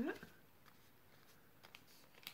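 Faint rustles and soft crinkling clicks of a small sheet of lined paper being folded and creased by hand into an origami cicada.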